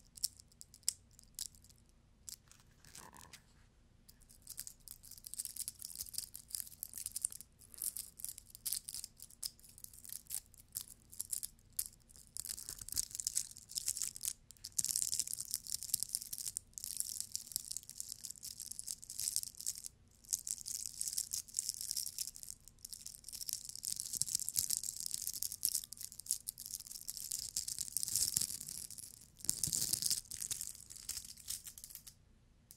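Fingertips scratching and rubbing glitter-covered Easter egg decorations close to a microphone: a dense, crisp, high crackle that comes in bursts with short pauses.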